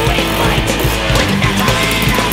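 Loud rock music soundtrack with a steady drum beat.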